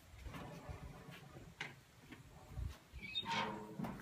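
A gas grill's lid is lifted open, with a few light clicks and knocks of metal and a short creak about three seconds in.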